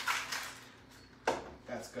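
Cocktail shaker being shaken, its rattle stopping about half a second in, followed by a single sharp knock about a second later.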